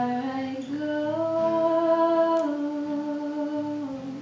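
A female voice sings a wordless, held melody over acoustic guitars in a live folk-pop song. She holds a few long notes, stepping up and then a little down, and the note ends near the end.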